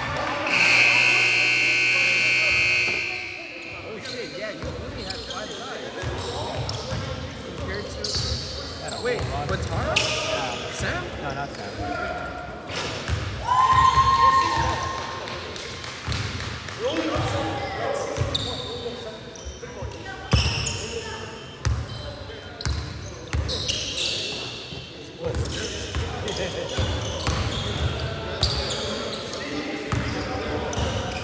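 A basketball bouncing and sneakers squeaking on a hardwood gym floor, with scattered players' voices echoing in the large hall. A steady tone sounds for about two seconds near the start.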